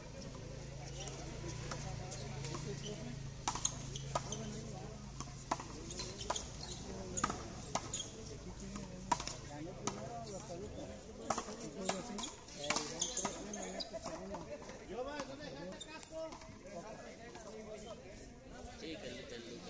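A rally on a frontón court: a hard ball smacked by the players and rebounding off the concrete wall, a quick run of a dozen or so sharp cracks at uneven intervals, starting a few seconds in and stopping about two-thirds of the way through. Low voices of players murmur underneath.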